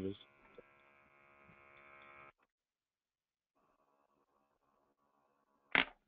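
Faint steady electrical hum on a conference-call audio line, cutting out about two seconds in and coming back a second later. A single short, sharp sound comes near the end.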